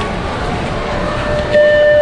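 Background noise of a crowded indoor arena, then about one and a half seconds in a loud steady tone starts and holds.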